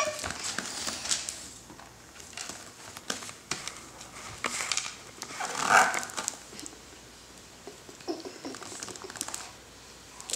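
Light taps and clicks of a baby's hands on a plastic seat tray, with one short breathy whimper from the baby about six seconds in.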